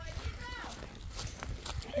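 Footsteps on dry leaf litter and dirt as people walk, with scattered light irregular steps and a faint voice in the background.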